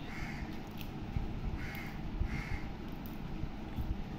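A bird calling with short harsh calls: one right at the start, then two more close together about two seconds in.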